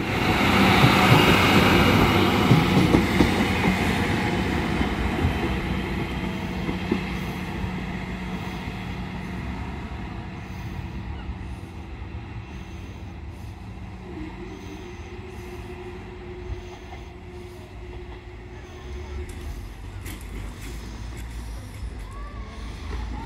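A Class 153 single-car diesel multiple unit, its underfloor Cummins diesel engine and wheels on the rails, passing close by and then fading steadily as it pulls away down the line. A steady low engine hum runs under the rail noise.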